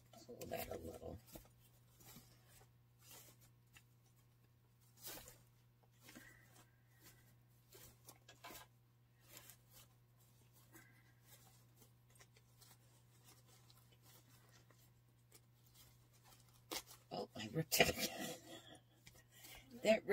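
Wired ribbon loops rustling and crinkling as they are fluffed and pulled into place by hand: scattered soft rustles over a steady low hum, then a louder stretch of crinkling near the end as a ribbon starts to rip.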